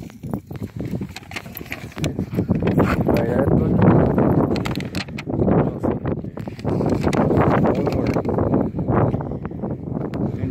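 Indistinct, muffled talking, mixed with knocks and rustles from the phone being handled close to the microphone.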